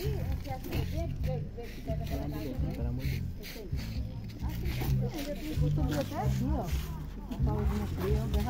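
Several people talking in the background, with music underneath that carries a low bass line changing note every half second or so.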